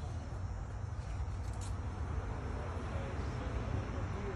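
Steady low rumble of outdoor background noise, with a faint click about one and a half seconds in.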